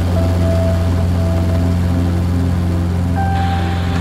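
Steady low drone of an air-ambulance aircraft's engines, with held music notes over it. About three seconds in, a radio channel opens with a hiss.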